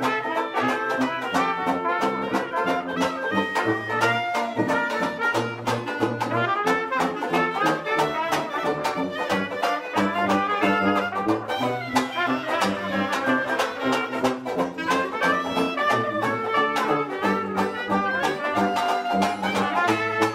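Traditional jazz quartet of clarinet, trumpet, banjo and tuba playing an up-tempo instrumental chorus. The clarinet plays the lead line over a walking tuba bass and a steady, quick rhythm strum.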